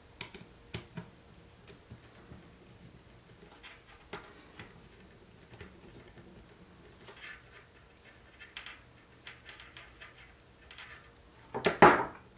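Small screwdriver turning a screw that fixes a shock absorber to a plastic RC car gearbox, with scattered faint clicks and plastic handling noises. A louder knock comes near the end.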